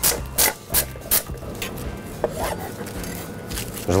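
Cling film rustling and crinkling under gloved hands as a chicken roll wrapped in it is rolled and tightened on a plastic cutting board: several short rustles in the first second and a half, then quieter rubbing.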